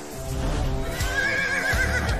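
Background music with a horse whinnying over it about a second in: a wavering call lasting about a second.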